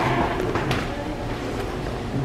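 Steady background noise of a large retail store with faint distant voices, and a few light crinkles and ticks as a plastic-wrapped peat-cell seed-starter package is handled.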